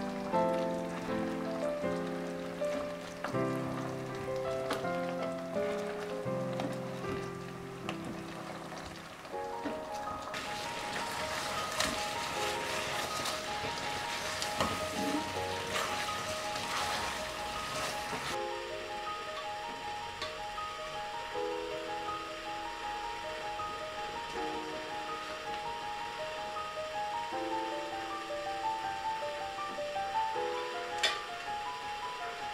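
Gentle background music with a simple melody of separate held notes. From about ten seconds in, for roughly eight seconds, apple pieces simmering in syrup in an enamel pot add a hissing, bubbling sound with many small pops as they are stirred with a spatula.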